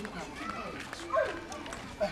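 People talking, with a few quick footsteps.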